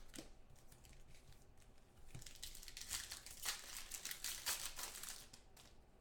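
Foil trading-card pack wrapper crinkling and crackling as hands handle it over the table, a quiet run of small crackles that grows thickest about two seconds in and thins out near the end.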